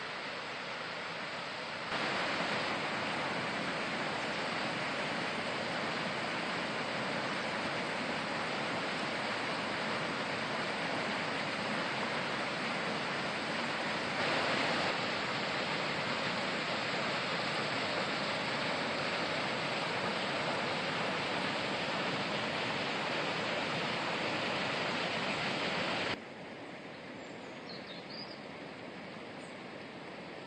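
Steady rushing of water over the Mrežnica river's small waterfalls. It gets louder about two seconds in and drops to a quieter, softer rush near the end.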